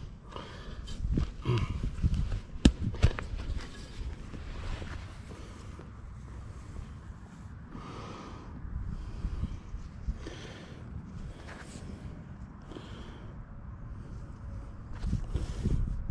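Hand digging and handling in grass turf: scrapes, clicks and knocks from a hand digger in the first few seconds, one sharper knock among them, then quieter rustling with a few short breaths.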